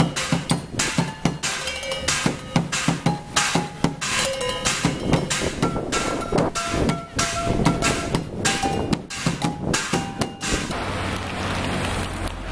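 Improvised drum kit of metal pots, pans, plastic buckets and suitcases played with sticks in a fast, dense rhythm, the pans ringing at several pitches after the strikes. The drumming stops about eleven seconds in, giving way to steady street noise.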